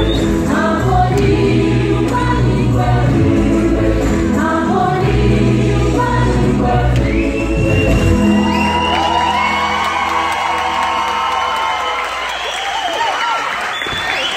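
Gospel choir singing live over a band with a steady bass. About halfway through the band drops out, and the song ends in held high singing with the audience cheering.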